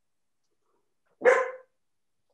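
A dog barks once, a short sharp bark about a second and a quarter in, heard through a video call's audio.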